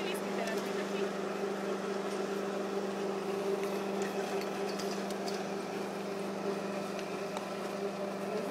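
A steady low mechanical hum, like a motor running, holding one even pitch over a background haze.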